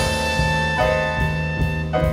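Live jazz quartet of soprano saxophone, piano, upright bass and drums playing, with long held notes through these seconds over the bass and cymbals.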